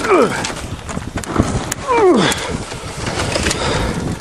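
Frozen snow being cleared off a car's hood and the hood raised: crunching and knocking, with two short falling creaks about two seconds apart.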